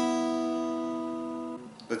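Open first and second strings (high E and B) of an acoustic guitar plucked together, the two notes ringing and slowly fading, then damped about one and a half seconds in.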